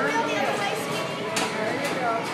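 Several voices chattering over one another, with a couple of short sharp clicks near the end.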